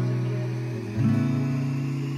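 Background music: a gentle pop love song with strummed acoustic guitar. Its chords are held, and they change about a second in.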